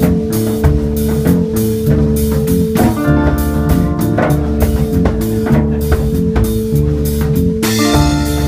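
Live reggae-dub band playing: drum kit keeping a steady beat with bass guitar and electric guitar under a held chord.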